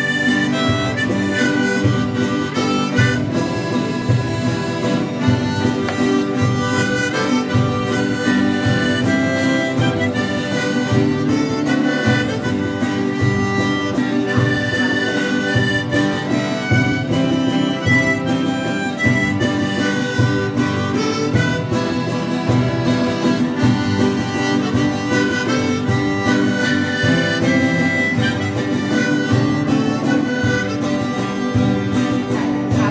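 Instrumental folk tune: two acoustic guitars strumming chords in a steady rhythm under a reedy, harmonica-like melody instrument.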